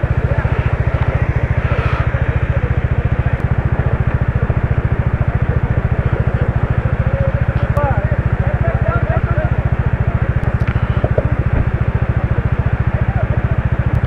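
Motorcycle engine idling steadily, a rapid even chugging that holds the same rate throughout, over the rush of a shallow mountain stream. Faint distant voices of people calling come in around the middle.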